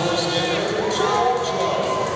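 Voices chattering in a large arena hall, with scattered dull thuds.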